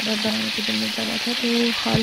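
Chapli kababs shallow-frying in a wide pan of oil, a steady sizzle. A voice can be heard behind the frying.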